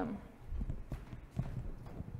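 Footsteps on a hard floor: a few irregular steps about half a second apart, with light knocks and handling noise.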